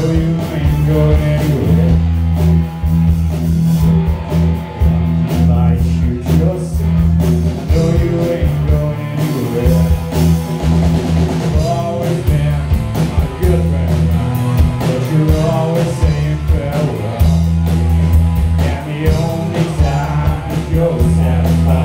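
Rock band playing live: electric guitars, bass guitar and drum kit, loud and continuous, with a heavy bass and a steady drum beat.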